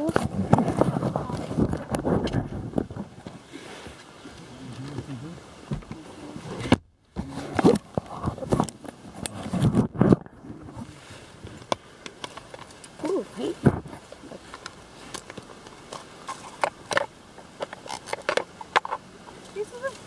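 Close handling noise from a camera being moved about in a car: irregular clicks, knocks and rustling, with short bits of low talk. The sound drops out completely for a moment about seven seconds in.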